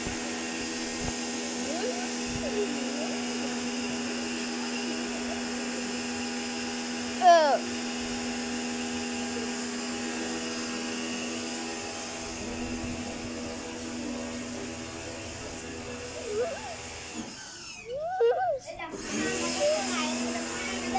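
Small electric pressure washer's motor and pump running with a steady hum, dropping out briefly near the end. A short loud vocal call about seven seconds in and voices near the end.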